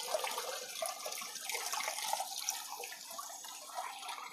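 Water from a plastic bucket splashing gently into the water tank of a desert cooler, along with the thin trickle from the tank's float-valve inlet.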